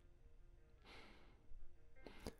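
A man's soft sigh, one breathy exhale about a second in, over faint, quiet background music notes.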